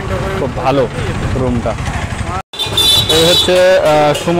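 Talking over low street-traffic noise. About two and a half seconds in, the sound cuts out for an instant and music with a sung voice begins.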